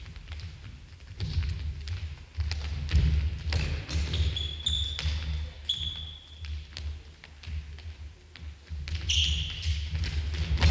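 Futsal ball being dribbled and kicked on a wooden gym floor: repeated knocks of foot on ball and ball on floor, with footsteps and a few short high sneaker squeaks around the middle and near the end, in a large hall.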